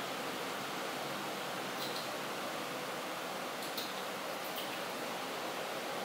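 Steady hiss of room noise, with a few faint short ticks scattered through it.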